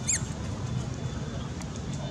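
A macaque gives a short high-pitched squeal that rises and falls right at the start, over a steady low background rumble.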